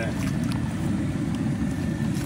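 Water churning steadily in a whirlpool tub around a mesh sack of live crawfish, washing the mud off them.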